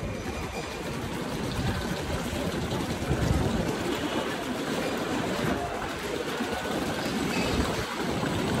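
Steady, rushing background noise of a busy covered pedestrian concourse, with no clear voices or distinct events.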